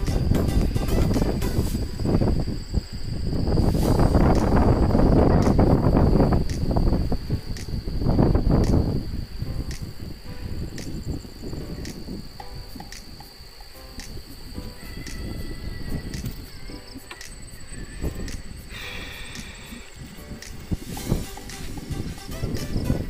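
Wind rumbling over the microphone of a camera on a moving bicycle, loudest in the first nine seconds and easing after, over a steady high-pitched chirring of insects at dusk. A light, regular beat of background music ticks along about twice a second.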